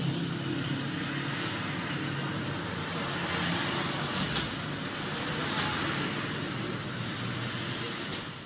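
Steady rushing background noise with a low hum under it, like distant traffic, and a few faint ticks.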